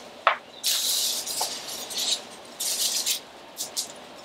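A dry, bare tree branch being handled and carried, its twigs rustling, clicking and scraping in a few short crackly bursts.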